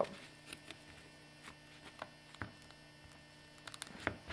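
Steady low electrical hum, with faint scattered clicks and scratches of fingers prying at a small epoxy-bonded carbon fiber test patch that does not come loose; the clicks bunch up near the end.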